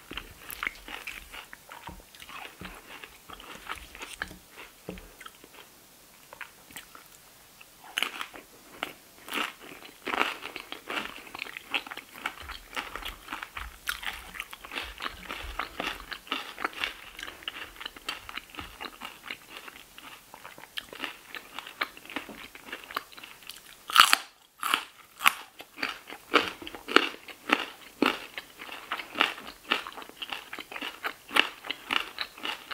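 Crunching and chewing of tortilla chips from a plate of nachos, a dense run of crisp cracks. The loudest crunch comes about four-fifths of the way through, followed by a short pause before the chewing resumes.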